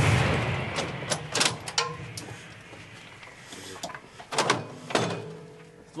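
Echo of an M777 155 mm howitzer shot fading away over about three seconds. It is followed by sharp metallic knocks and clanks, two loud ones near the end, as the crew works the gun's breech after firing.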